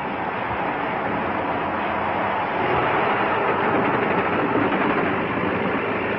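Steady rumbling roar of blasting, an explosion throwing a cloud of water and spray into the air, with no separate sharp bangs.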